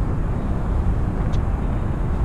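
Steady low rumble of outdoor city ambience from high above the streets, with wind buffeting the microphone.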